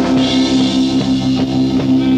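Punk/new-wave rock band playing live: electric guitar and bass holding a steady droning note over regular drum-kit beats.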